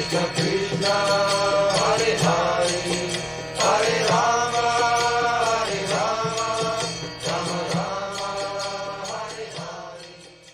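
Devotional mantra chant: voices holding long sung notes over a steady low drone, with a regular percussive beat. It fades out over the last few seconds.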